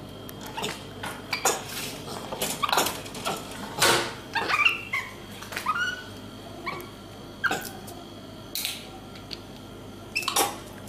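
Capuchin monkey giving several short calls that rise in pitch, bunched around the middle, among scattered sharp clicks and knocks from a plastic bottle being handled.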